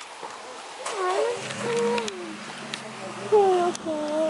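A low, steady growl from a large animal, starting about a second and a half in and holding to the end, under high-pitched voices.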